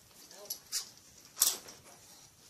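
A few brief, sharp rustles and clatters of items being handled and tossed into a plastic storage tote, the loudest about a second and a half in.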